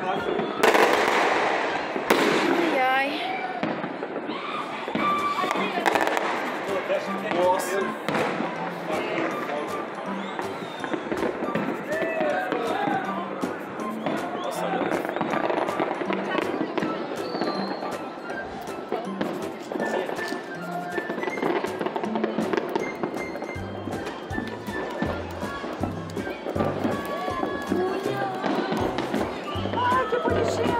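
New Year's fireworks going off across a neighbourhood: a loud burst about a second in, then many scattered bangs and crackles. Music and people's voices carry underneath, and a heavy bass beat comes in near the end.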